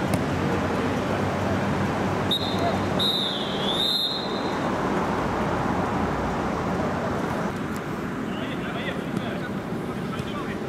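Referee's whistle: a short blast, then a longer one of under two seconds that dips in pitch midway, over players' and spectators' shouts and chatter.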